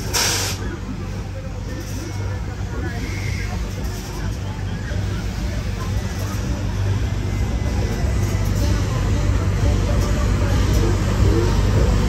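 Kangaroo-type fairground ride running with riders aboard: a steady low machinery hum, with a short burst of air hiss right at the start.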